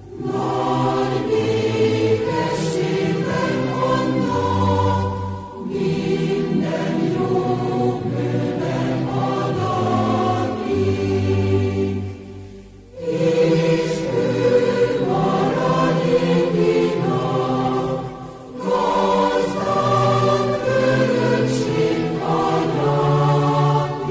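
Choral music: a choir singing slow, held phrases, with brief breaks between phrases about five, thirteen and eighteen seconds in.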